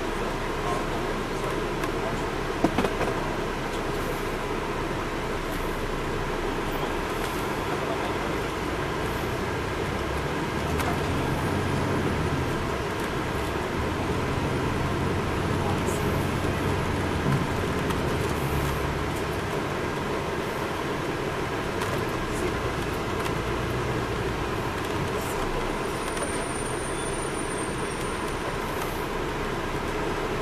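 Inside an MCI D4000 coach under way: the Detroit Diesel Series 60 diesel engine and road noise running steadily, the engine louder through the middle stretch. A couple of sharp knocks about three seconds in.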